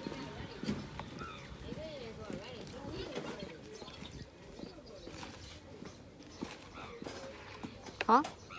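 Faint, distant voices of a few people talking in an open outdoor lane, with scattered small clicks and knocks.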